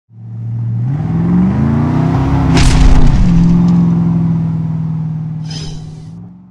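Engine sound effect in an intro sting: an engine revs up with rising pitch, a sharp crash hits about two and a half seconds in, then the engine holds a steady note and fades out, with a brief hiss near the end.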